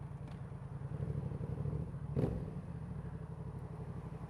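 2015 Yamaha MT-07's 689 cc parallel-twin engine, fitted with a full Leo Vince exhaust, running steadily at low revs as the bike rolls slowly. A single spoken word about halfway through.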